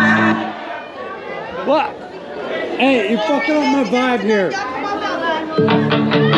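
Party music cuts out about half a second in, leaving people talking and chattering. The music starts again near the end.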